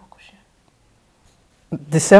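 Voices in conversation: a few soft words at the start, a pause of about a second, then a voice starting to speak loudly near the end.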